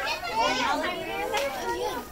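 Children's high-pitched voices talking, unclear and not forming transcribed words.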